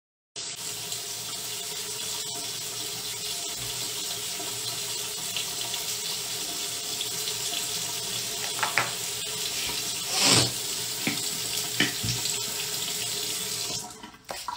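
Water running steadily from a tap, with a few short knocks and one louder clatter about ten seconds in; the water stops suddenly just before the end.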